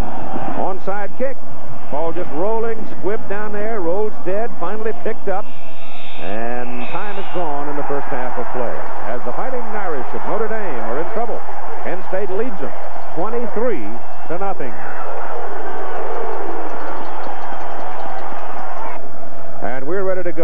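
Voices that sound like speech but were not picked up as words, over the steady noise of a large stadium crowd, as heard on an old TV broadcast.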